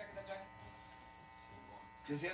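Faint, steady electrical buzz with many overtones from an idle amplified rig: an electric bass plugged into a small mixer, humming while no note is played.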